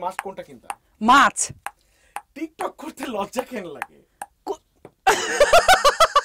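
Voices talking and exclaiming, with a loud, short vocal outburst about a second in; near the end they break into laughter.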